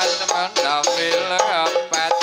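Dolalak dance accompaniment music from a seated ensemble: a melody with sliding pitches over drum percussion, with a sharp tick on the beat about twice a second.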